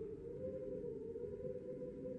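Faint, sustained low drone: a single held tone that wavers slightly in pitch, with a low rumble beneath, an eerie background pad between narrations.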